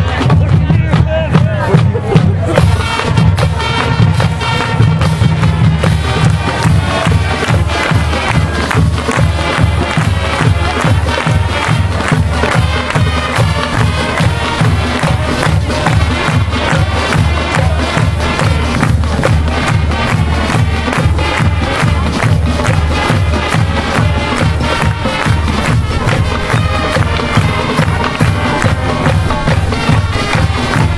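A high school marching band playing on the field, with its drums keeping a steady beat throughout.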